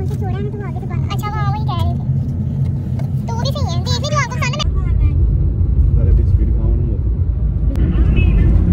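Car cabin hum of a small car on the move, with voices over it; about four and a half seconds in, the voices stop and a much louder, deep road rumble of the car driving takes over.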